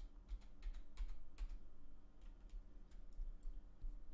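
Faint computer-keyboard typing: a quick run of key clicks in the first second and a half, then a few scattered clicks, over a low steady hum.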